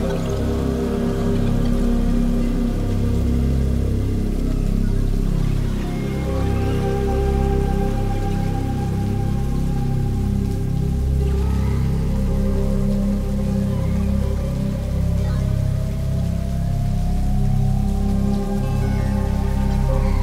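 Ambient music from a Eurorack modular synthesizer: a sustained wavetable pad over a low bass line, with a siren-like tone gliding slowly down and then slowly back up, swept by a slow LFO.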